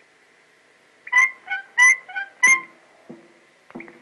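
Cartoon soundtrack from an early optical-sound film: after a second of faint film hiss, five short piping notes alternating high and low, then a few softer, lower notes.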